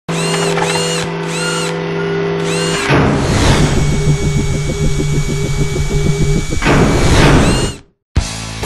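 Mechanical sound effects for an animated logo intro. A steady motor hum carries four short whirring chirps, then a whoosh leads into a fast, pulsing machine whir. A second rising whoosh follows near the end, and the sound cuts off suddenly.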